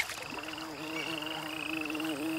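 A frog calling in one long, steady low trill that dips briefly in pitch about three times a second, with a high, rapidly pulsed trill running above it.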